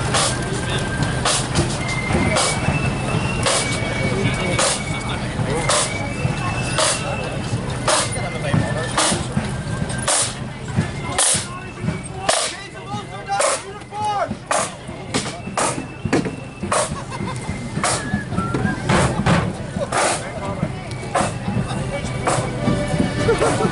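Marching flute band playing: a high flute melody over snare drums, with the side drummers passing close so their strokes dominate in the middle.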